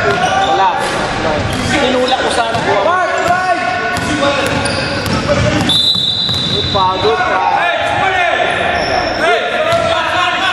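Basketball game in a gym: sneakers squeaking on the hardwood floor in many short rising and falling chirps, and a basketball bouncing. About six seconds in, a referee's whistle blows one steady high note for just over a second.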